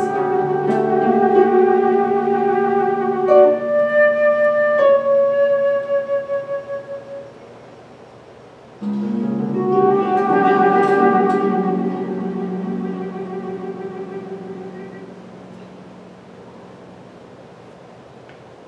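Live contemporary classical music: a mezzo-soprano holding long notes with vibrato over harp accompaniment. The sound dies away twice, with a pause in the middle, and fades to quiet near the end.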